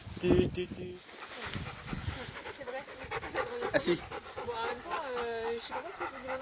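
Beagle puppy whining and yelping in high, gliding calls while play-fighting with a larger dog, which pants. The calls grow more frequent in the second half, with one long drawn-out whine near the end.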